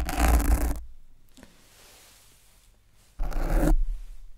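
Two loud bursts of scratching and rubbing right on the microphone, the first at the very start and the second about three seconds in: a quick check that the mic is recording.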